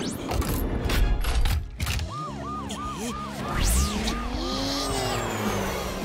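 Cartoon fire-rescue vehicle setting off: an engine rev with a tyre screech in the first two seconds, then a wailing siren repeating about three times a second, over background music.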